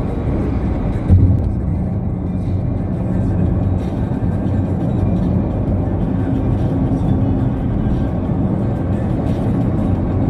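Steady low road and engine rumble heard from inside a moving vehicle at highway speed, with music playing along with it. A brief louder low thump comes about a second in.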